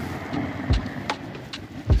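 Handling noise on the body-worn microphone: two dull thumps about a second apart and a few light ticks as the camera and its fabric strap swing and knock against it, over a low steady street background.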